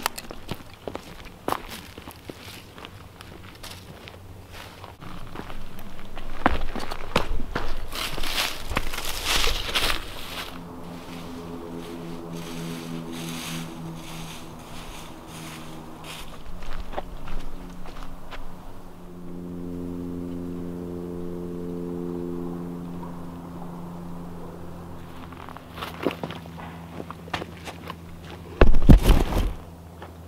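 Footsteps crunching on dry leaf litter and rock, then a steady low hum of several fixed tones that lasts over ten seconds. A loud knock comes near the end as the camera falls over.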